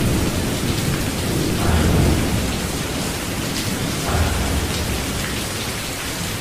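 Heavy rain with rolling thunder: a steady, dense hiss of rain with deep rumbles swelling up about two seconds in and again around four seconds.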